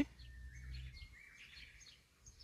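Faint bird chirps, short and high, over quiet outdoor background noise.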